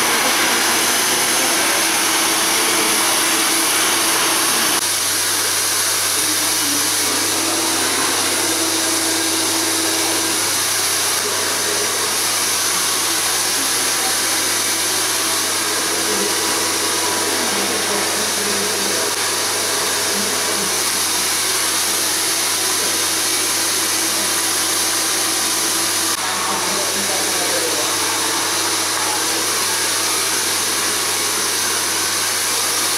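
Hand-held hair dryer running steadily, blow-drying hair; its sound shifts slightly about five seconds in and again near the end.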